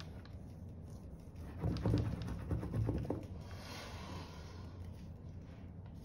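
A metal spoon rubbed in short strokes over the back of paper laid on an inked lino block, loudest in the first half, then a soft breathy hiss as the rubbing stops.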